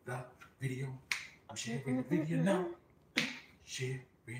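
A man's voice making wordless sounds, with a few sharp snapping clicks mixed in.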